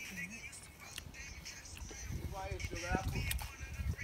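Faint voices of people talking nearby, heard briefly about halfway through, with a few light knocks from the phone being handled.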